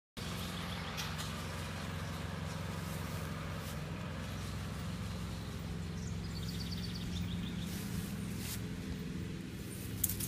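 Outdoor background: a steady low hum, with a few faint clicks and a brief, quick run of high chirps about six seconds in.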